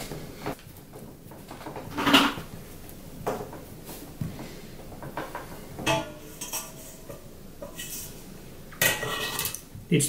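Hands pressing and working moist pottery clay slabs together on a wooden workbench: scattered soft knocks and pats, a few with a light clink.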